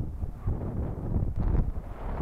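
Wind buffeting the microphone, a gusty rumble that swells strongest about a second and a half in.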